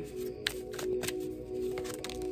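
A large tarot deck being shuffled by hand, a quick irregular run of card slaps and slides. Under it plays soft background music with steady held tones.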